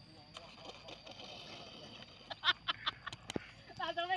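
Faint voices, then a quick run of six or so sharp knocks about two seconds in, the loudest near the start of the run, and a voice beginning near the end.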